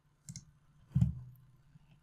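A computer mouse click about a quarter second in, followed about a second in by a louder, low, dull thump.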